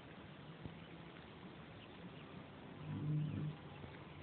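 Faint outdoor quiet with a few small ticks, then about three seconds in a short low hum lasting under a second.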